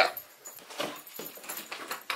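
A dog whimpering faintly in a few short, soft whines.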